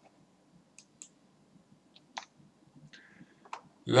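A few faint, isolated clicks, spaced irregularly about a second apart, over a low room hum.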